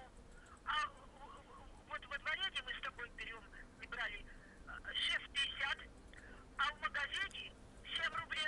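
A voice talking over a telephone line, heard thin and faint through the phone's speaker in several short phrases, with a low steady hum underneath.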